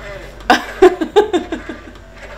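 A woman laughing: a quick run of short laughs, each dropping in pitch, starting about half a second in.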